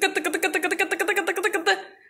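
A woman's high-pitched voice in a rapid, pulsing vocalisation held at nearly one pitch, fading out just before the end.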